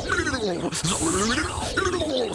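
Electronic zapping sound effect of a purple lightning bolt, with repeated falling sweeps over a low electric buzz.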